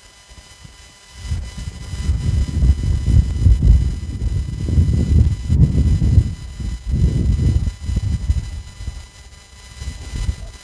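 Wind buffeting a phone's microphone outdoors: a loud, low rumble in uneven gusts that starts about a second in and eases off near the end.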